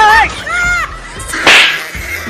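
Comedy sound effects: two short arching high-pitched tones, then a sharp whip-like swish about one and a half seconds in.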